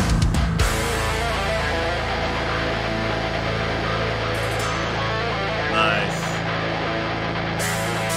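Metalcore music with heavy electric guitar: the drums stop about half a second in, leaving a held low chord with lighter notes ringing over it.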